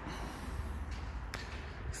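A man's breathing through the nose close to a phone's microphone, a couple of short breaths over a low steady rumble of handling noise.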